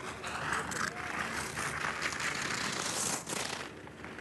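Downhill race skis hissing and scraping over hard, icy snow at speed, a steady rushing noise with a few brief louder scrapes.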